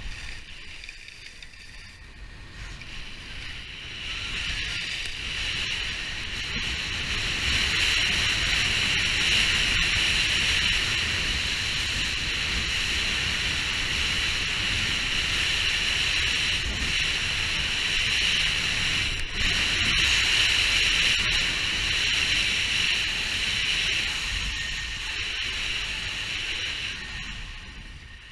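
Wind buffeting the camera microphone and skis hissing over groomed snow during a fast downhill run. It builds over the first few seconds, holds steady, and fades near the end as the skier slows.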